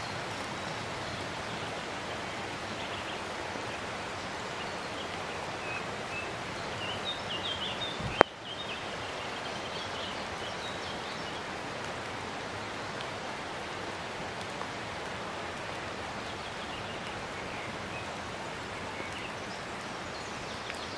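Steady rushing of a nearby waterfall. A few short high chirps come near the middle, and there is a single sharp click about eight seconds in.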